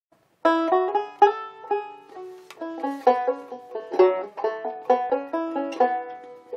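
Banjo picking the opening tune, a quick run of bright plucked notes, starting about half a second in.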